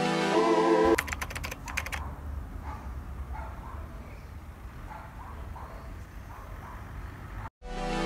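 Background music for about the first second, then outdoor ambience: a quick run of about eight clicks, followed by a low rumble of wind on the microphone with faint, repeated high chirps. Music returns just at the end, after a brief dropout.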